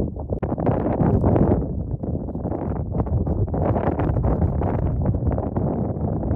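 Wind buffeting the microphone: a loud, low noise that rises and falls in gusts.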